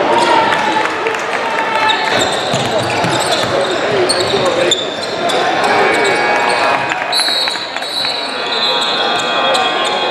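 Live sound of an indoor basketball game: a basketball bouncing on the hardwood among the voices of players and spectators, echoing in a large gym.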